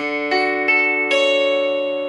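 Clean electric guitar, a Telecaster-style solid body, picking a D major 7 chord with the open D string ringing and three fretted notes higher up the neck. Four notes come in one after another over about a second and are left ringing together.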